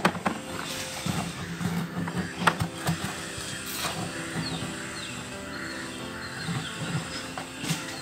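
Scattered light knocks and scrapes of hands working at the bottom of a plastic bucket, over a faint steady low tone.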